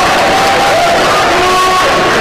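Loud crowd noise in a packed room, people cheering and calling out, with a few voices holding long notes over the din.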